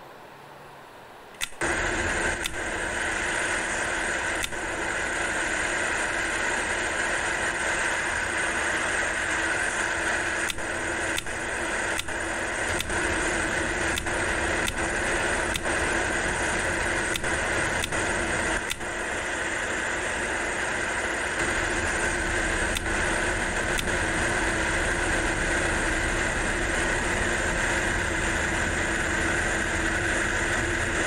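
Simulated electric desk fan of a web toy, switched on with a click about one and a half seconds in and then whirring steadily. Sharp clicks come now and then over the whir.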